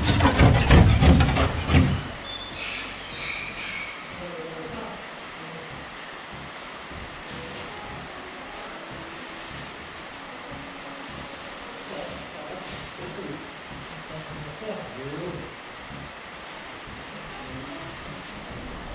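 Talking for about the first two seconds, then low, steady room noise with faint, distant voices.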